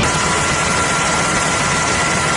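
Steady engine drone of an aircraft, a rushing noise with a faint steady whine in it.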